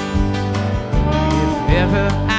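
Live band playing with no singing: strummed acoustic guitar, keyboards, electric guitars, bass and drums, with a steady low pulse. A melodic line that bends in pitch comes in near the end.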